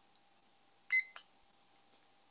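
A short, high electronic beep about a second in, followed at once by a single click, over a faint steady hum.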